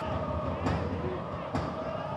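Football stadium ambience during live play: a steady low rumble from a sparse crowd, distant voices shouting, and a couple of faint knocks about a second apart.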